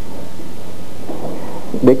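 Steady rushing hiss of a worn analogue recording in a pause in a man's lecture, with his voice coming back near the end.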